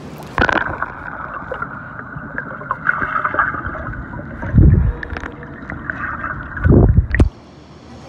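An iPhone X's microphone submerged in a swimming pool: the sound goes muffled with a splash as it dips under, then a dull underwater hiss with two deep whooshing rumbles of water moving past the microphone. The clearer sound comes back about seven seconds in as the phone is lifted out.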